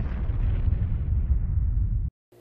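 Explosion sound effect: a deep rumble with a higher hiss that slowly fades.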